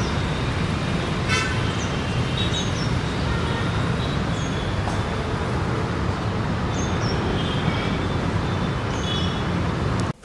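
Steady outdoor traffic noise, with a few short, faint horn toots and scattered brief high chirps over it.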